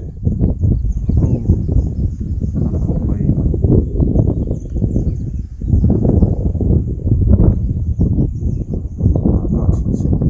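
Wind buffeting the microphone: a loud, low rumble that comes in gusts, easing briefly about five and a half seconds in and again near eight and a half seconds.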